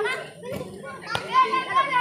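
Children shouting and laughing excitedly, several voices overlapping.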